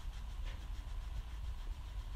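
Coloured pencil scratching on paper in short, repeated shading strokes, faint over a steady low rumble.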